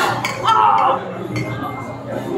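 Glass beer mugs clinking together in a toast, a sharp clink right at the start followed by a few lighter knocks, with voices over it.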